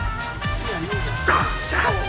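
Music playing, with held chords and a steady bass, and short sliding yelp-like sounds over it.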